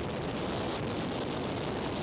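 Motorboat under way: the engine running steadily beneath an even rushing noise of wind and water, with no change in pitch or level.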